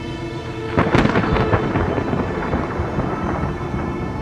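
A sudden loud crash about a second in that rumbles on and fades over the next couple of seconds, like a thunderclap, over a held drone of eerie soundtrack music.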